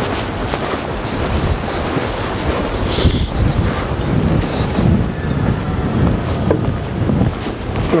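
Wind buffeting the microphone: a steady, loud rushing rumble.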